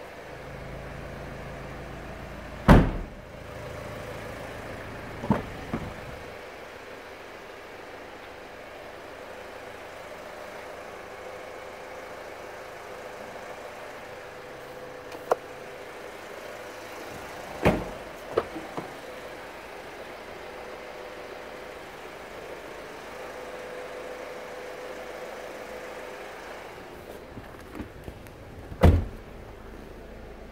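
Doors and tailgate of a 2013 Kia Sportage being shut: a loud thump about three seconds in, a few lighter clunks after it, another door thud near the middle and a loud one near the end, over a steady low hum.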